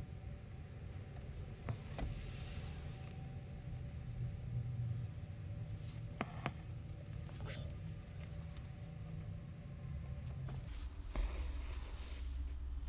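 Hand embroidery: a needle pushed through fabric in a wooden hoop and two-strand embroidery floss pulled through after it, several short faint rasps with a few small clicks. A steady low hum runs underneath and drops off near the end.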